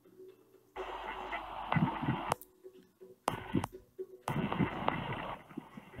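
Muffled, hissy live audio from a Wyze outdoor security camera, played through the phone app. It cuts in about a second in, drops out, then returns briefly near the end: the camera's weak Wi-Fi link is making the feed drop out.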